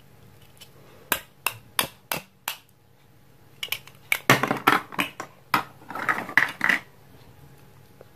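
Plastic toy eggplant halves tapped together in about five sharp clicks, followed by two bursts of crackling rasp as the velcro pads on the cut faces of the toy fruit are handled and pressed together.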